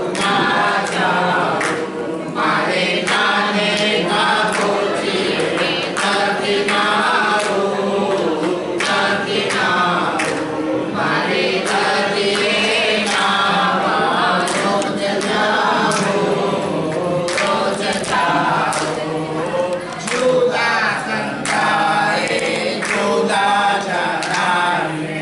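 A seated group of people singing a song together in chorus, with hand claps keeping time.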